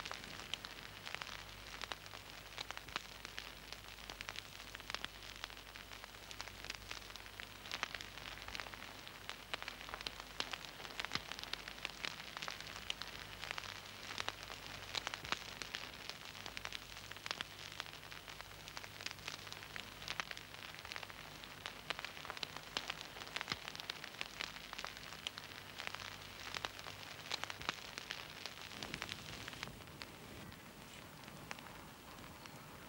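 Small wood campfire crackling, with a dense, steady run of small sharp pops and snaps.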